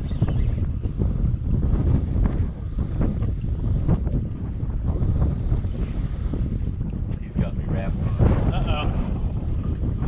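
Wind buffeting the camera microphone: a loud, steady, gusting rumble.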